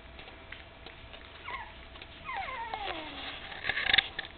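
Dog whimpering: a short falling whine about a second and a half in, then a longer whine sliding down in pitch. A brief rustle near the end is the loudest moment.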